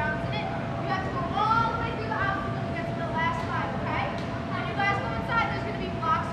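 Indistinct talking of several voices, none clearly understood, with a steady thin hum underneath.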